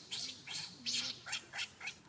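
Baby macaque crying in distress: a run of short, shrill, high-pitched squeals, about three a second, which stops near the end.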